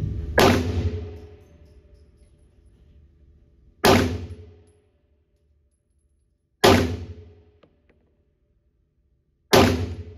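Four slow, aimed shots from a Tisas 1911 Night Stalker 9mm pistol, spaced about three seconds apart, each with an echoing decay in an indoor range.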